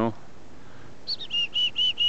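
A small wild bird calling: a quick run of about six short, clear notes at about five a second, the first one higher than the rest.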